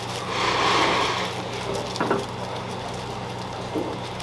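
Glutinous rice sizzling on a hot stone plate over a gas burner as it is pressed into a scorched-rice crust (nurungji), loudest for about the first second and a half. A single knock about two seconds in, over a steady low hum.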